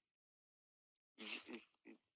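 Near silence, then about a second in a brief, faint man's voice over a phone's speaker held up to the microphone.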